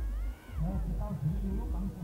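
A person talking, likely a match commentator, with a short high cry near the start that rises and then falls in pitch.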